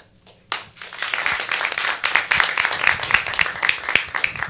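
A studio audience applauding, the clapping starting about half a second in.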